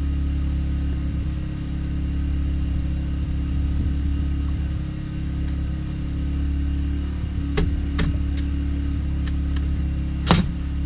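Portable generator running with a steady low engine hum. Near the end, a framing nail gun fires two sharp shots less than half a second apart, followed by a few fainter clicks.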